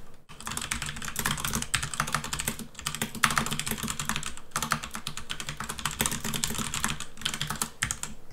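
Rapid, continuous typing on a computer keyboard, dense runs of keystrokes broken by a few brief pauses.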